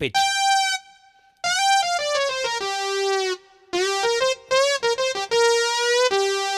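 Yamaha CK88 playing a bright synth lead patch, its pitch bent down with the pitch-bend wheel: a short high note, then held notes that drop about an octave, a low held note nudged up a little, and another drop near the end.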